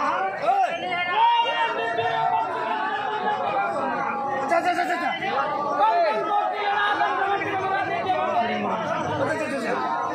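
Several voices overlapping, led by a man's voice through a microphone and loudspeaker.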